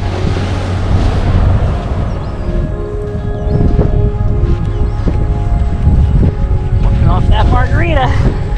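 Wind buffeting the camera's microphone: a loud, uneven rumble with hiss. A voice comes in near the end.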